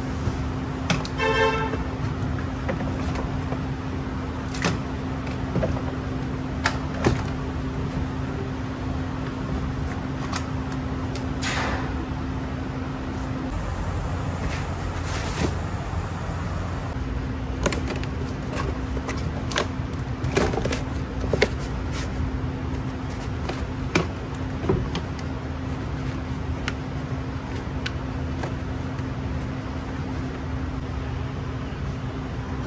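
Scattered knocks, clunks and clicks of a 12-volt car battery and its hardware being handled: the old battery lifted out and set down and the new one seated in the tray. A short squeak about a second in, all over a steady low hum.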